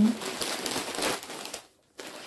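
Crinkling and rustling of packaging being handled, with irregular crackles, cutting off suddenly about a second and a half in.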